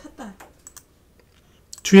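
A few faint keystroke clicks from typing on a computer keyboard.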